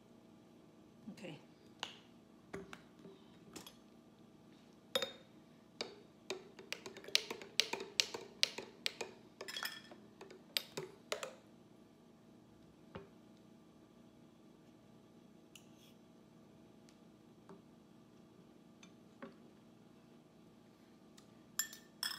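Metal spoon stirring in a glass pitcher of juice, clinking quickly and repeatedly against the glass for several seconds after a few scattered clicks; the clinking stops a little past the middle, leaving only a few faint ticks.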